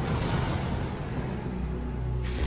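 Anime episode soundtrack: low sustained music tones under a rushing swell of noise that comes in at the start and fades after about a second and a half.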